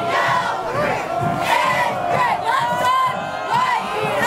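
High school cheerleaders shouting a cheer together, many young voices yelling at once.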